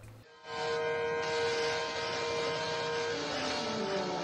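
Film soundtrack music starting about half a second in: a held chord over a steady rushing noise, moving to a new chord about three seconds in.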